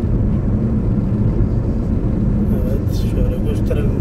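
Car cabin noise while driving at a steady speed: a continuous low rumble of engine and tyres on the road, heard from inside the car.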